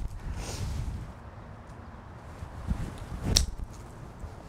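A single sharp click of a golf iron striking the ball about three seconds in, over a low rumble of wind on the microphone.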